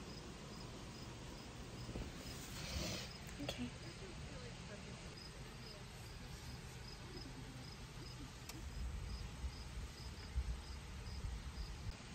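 Faint, steady cricket chirping, a short high chirp repeated at an even pace throughout.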